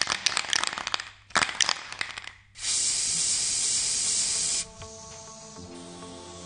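Aerosol spray-paint can rattling in two short bouts as it is shaken, then a loud, steady hiss of spraying for about two seconds. Near the end the spray drops to a fainter hiss as music comes in.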